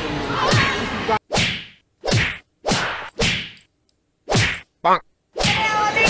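A run of about six sharp whack-and-slap hits with a quick swish to each, separated by short silences, as a group beats someone lying on the ground; a steadier commotion starts near the end.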